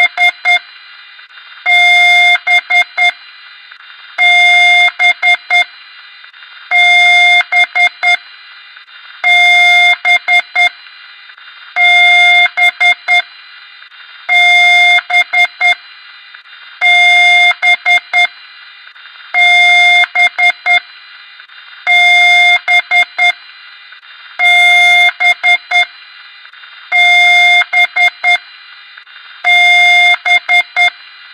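Loud electronic beeper sounding a repeating pattern about every two and a half seconds: one long buzzy beep followed by a quick run of about five short clicks, over a steady hiss.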